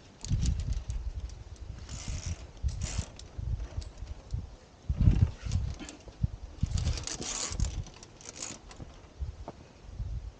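Via ferrata climbing gear and movement: metal lanyard carabiners clicking and scraping along the steel safety cable, with boots and hands scuffing on rock. Irregular low bumps on the microphone from the climber's movement run throughout, the loudest about five seconds in, and scraping bursts come around two to three seconds in and again near the seven-to-eight-second mark.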